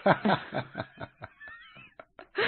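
A person laughing: a quick run of short chuckles that fade away over about the first second and a half.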